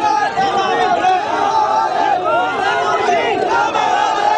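A large crowd of many voices shouting and calling out at once, loud and continuous, with no single speaker standing out.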